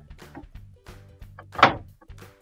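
Quiet background music, with one sharp plastic click about one and a half seconds in as a freezer drawer-slide stopper is pushed into place.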